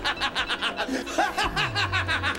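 A man laughing in a rapid, even run of short 'ha' pulses, about eight a second, over background music.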